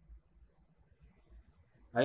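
A few faint computer mouse clicks against near silence, as points of a polygonal lasso selection are placed.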